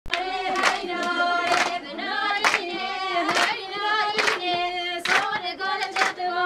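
A group of voices, the women guests, singing a song together with long held notes, while hands clap a steady beat a little under one clap a second.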